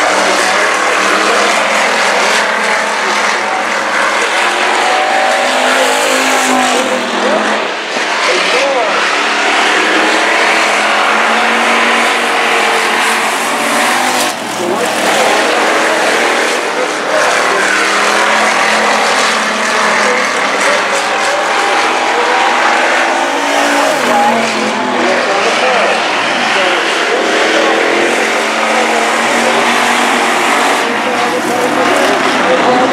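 Several dirt-track stock cars racing around a dirt oval, their engines revving up and down in pitch through the turns and straights. Loud and continuous, with brief dips about eight and fourteen seconds in.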